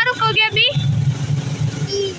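Motor vehicle's engine running with a steady low hum, heard from inside the vehicle while riding. A high-pitched voice calls out over it during the first moment or so.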